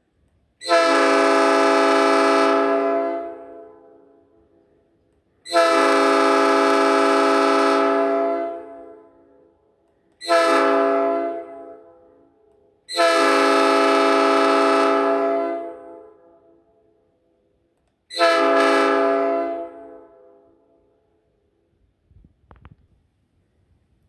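Five-chime air horn, a copy of a Nathan AirChime P5 from a Speno rail grinder, blown five times. Each blast is a steady multi-note chord that starts abruptly, holds for about two to three seconds, then trails off. The third blast is shorter than the rest.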